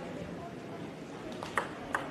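Table tennis ball ticking off bat and table as a serve is played: a few short, sharp clicks in quick succession in the second half, over a low hall murmur.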